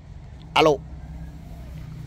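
Mostly speech: a man answers a phone call with a single "alo". A steady low rumble runs underneath.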